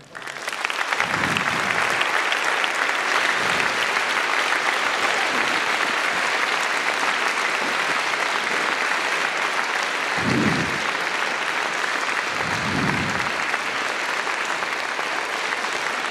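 Audience applauding, swelling within the first second and then holding steady.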